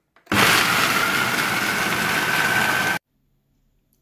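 Ninja Auto-iQ 1500-watt countertop blender starting up and crushing frozen apricot pieces: a loud, steady motor run with a whine that creeps slightly upward in pitch. It starts a moment in and cuts off suddenly just under three seconds later.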